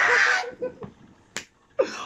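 A man's loud, breathy mock moan that breaks off about half a second in. It is followed by faint voice, a single sharp click near the middle, and voices starting up again just before the end.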